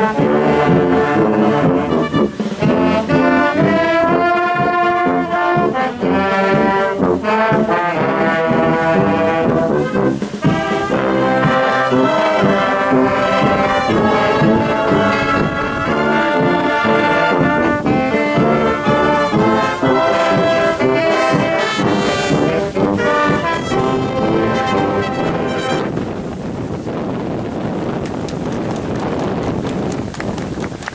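Filarmônica wind band of sousaphones, euphonium, trombones, trumpets and saxophones playing a tune together while marching. The playing thins out and drops in level near the end.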